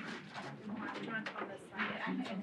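Faint voices speaking away from the microphone, with low room murmur.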